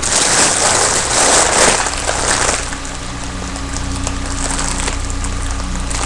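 Helium hissing out of the neck of a foil balloon as it is breathed in, loud for the first two and a half seconds, then a fainter steady hiss.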